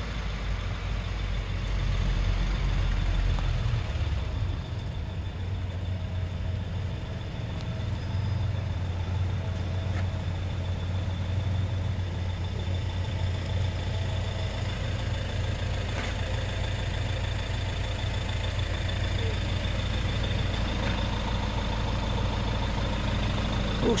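A 1969 Ford Capri 1600 XL's four-cylinder engine ticking over at a steady idle, a low, even hum.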